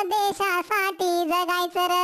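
A single high-pitched, cartoon-like voice singing a Marathi patriotic song, holding long notes between short quick syllables.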